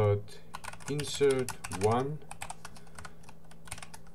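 Computer keyboard typing: a quick run of key clicks.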